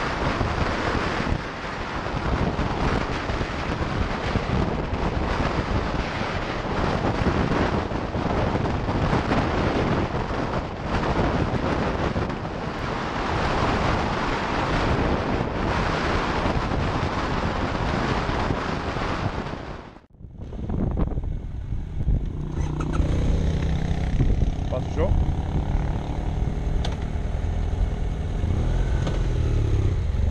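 Wind rushing over a motorcycle rider's helmet-mounted camera at road speed, a dense steady roar. About twenty seconds in it cuts off abruptly and a BMW motorcycle engine takes over, running at low speed with a low rumble and scattered small clicks.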